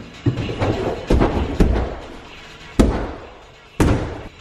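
Feet and body striking an inflatable airtrack during a tumbling run: five heavy thumps spread unevenly through the run, the last one as the tumbler comes down short of a clean landing and drops to a seat.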